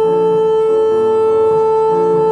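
Saxophone holding one long steady note over piano accompaniment, whose lower chords change beneath it twice.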